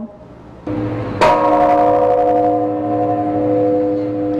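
A large temple bell struck once, about a second in, then ringing on with several steady tones that fade only slowly.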